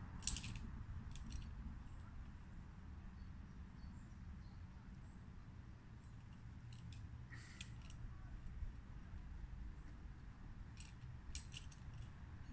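Quiet outdoor ambience: a low steady rumble with a few brief, faint scratchy clicks scattered through it.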